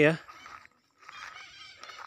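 Faint, short bird calls in the background, a few of them about a second in and again near the end.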